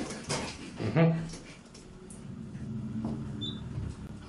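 Hydraulic elevator car travelling down, a low steady hum in the cab, with a short faint high beep near the end.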